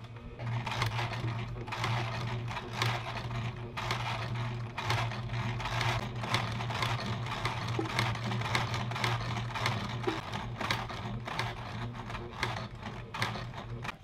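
Electric home sewing machine stitching through layered cotton fabric: the motor hums steadily under a rapid, continuous ticking of the needle strokes.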